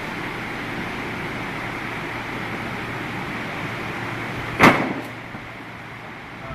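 Steady background mechanical noise, then a single sharp slam a little past halfway, with a smaller click just after; the background noise is quieter after the slam.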